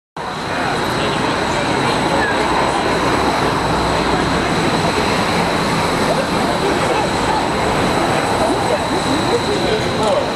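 Steady street and traffic noise with a crowd chatting, while a Portland Streetcar approaches on its rails, itself nearly silent.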